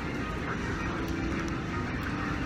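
Steady background hum of an airport terminal, with a faint held tone running under it.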